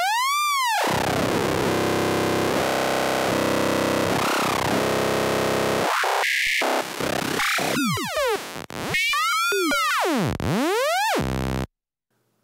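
Synthesized psytrance lead from a Phase Plant sawtooth patch, its pitch swept up and down by a slow sine LFO in several arching glides, with buzzy steady stretches and short breaks between. It cuts off shortly before the end.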